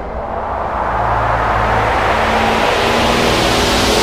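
A rushing noise that swells and brightens steadily over a steady low hum.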